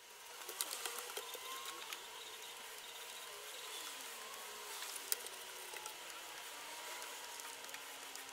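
Faint outdoor ambience: a steady hiss with a faint low tone slowly falling in pitch, and a single faint click about five seconds in.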